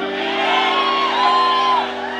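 Live rock band holding a steady sustained chord, with two drawn-out whoops from a voice over it.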